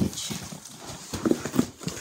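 Cardboard shipping box handled close to the microphone as its already-opened flaps are pulled back, with knocks and rustles and a sharp click at the start. Two short vocal sounds come in the second half.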